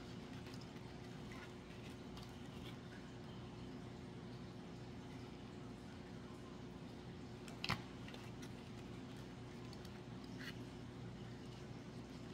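Quiet room with a steady low hum under faint handling of a hot glue gun and foam petals, with one sharp click about eight seconds in and a fainter one near the end.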